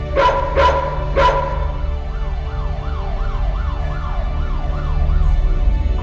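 A dog barks three times. Then, from about two seconds in, a police siren wails up and down about twice a second over a low music track.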